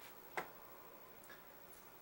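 Quiet room tone with one sharp click about half a second in and a much fainter tick later.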